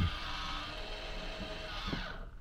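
MaxxAir roof vent fan's electric motor running with a steady whir after a push of its button, stopping near the end.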